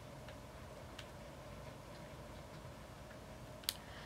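Quiet room tone with a faint steady hum and a few faint ticks, then one sharper small click near the end.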